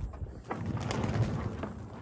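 An IMOCA racing yacht's sail and rigging shaking as the boat rolls on a big swell in a near calm: a low rustling rumble that swells about half a second in, with a few soft clicks.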